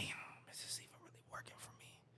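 Faint breathy, whispered voice sounds, fading to near silence near the end.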